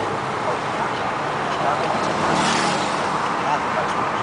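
Road noise from inside a moving Volvo C70 convertible: steady engine and tyre noise, with a louder rush of passing traffic about two and a half seconds in.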